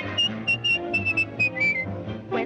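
Human whistling: a quick run of short, high whistled notes, the last few stepping down, over a swing band's bass and rhythm accompaniment.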